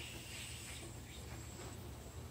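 Quiet background noise: a faint steady hiss with a low hum, and no distinct event.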